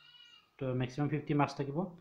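A man's voice speaking a short phrase of narration.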